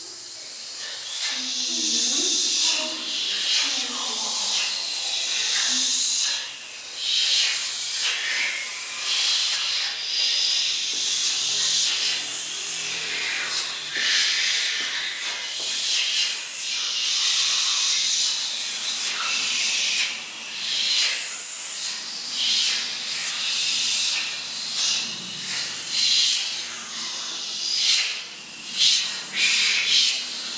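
Many voices whispering and hissing together in an electro-acoustic choral piece, a dense sibilant wash that swells and breaks off unevenly. Low mumbling runs under it in the first few seconds.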